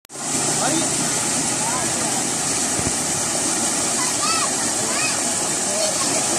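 Tube well water gushing from its outlet pipe into a concrete tank: a steady, loud rush of falling water that starts abruptly.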